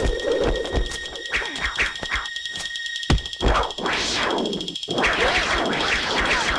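Shrill, steady high-pitched ringing from a guqin's strings struck by a sword tip, a dramatized martial-arts sound effect. Two piercing tones are heard, the lower one cutting off about three seconds in. Quick swishing sweeps and a sharp hit come with it, and a louder swell follows about four seconds in.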